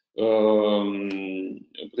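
A man's voice holding one long, even hesitation vowel ('uhh') for about a second and a half in mid-sentence, then words resume near the end.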